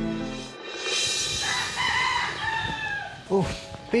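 A rooster crowing once, a single drawn-out call that sags in pitch toward its end, as soft background music fades out. A man's voice breaks in near the end.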